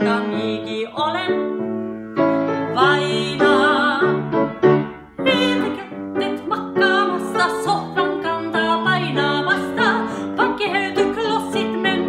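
A woman singing in a classically trained, operatic style with wide vibrato, accompanied by piano, in a comic song in Meänkieli.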